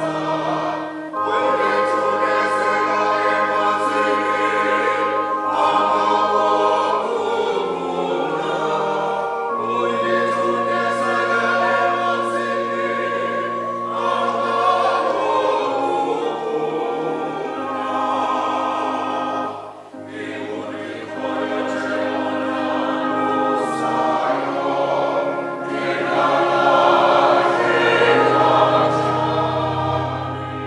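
Congregation singing a hymn together, many voices holding long notes in chorus, with a short break between phrases about two-thirds of the way through.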